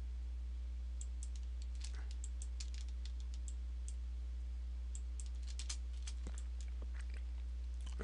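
Computer mouse and keyboard clicks, light and irregular, coming in small clusters while faces are selected one by one. A steady low electrical hum runs underneath.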